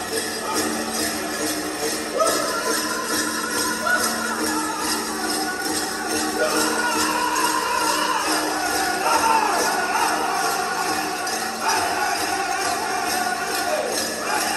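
Powwow drum group singing over a steady, even beat on the big drum, with metallic jingling from the dancers' regalia bells.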